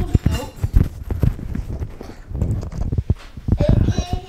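Footsteps going down an indoor staircase in sneakers: a quick, irregular run of thuds on the treads.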